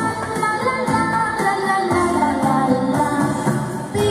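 A young girl singing a melodic song into a microphone over steady musical accompaniment.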